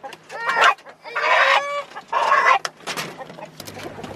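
A rooster held in the hand squawks loudly three times, distress calls at being caught and handled.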